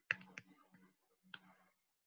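A few faint clicks from writing on a computer whiteboard: two in quick succession at the start and a third about a second later.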